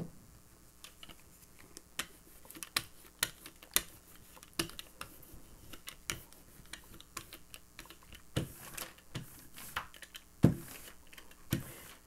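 Rubber brayer rolling acrylic paint out across a gel printing plate: a soft, irregular crackle of small clicks, with a few louder knocks and brief swishes near the end.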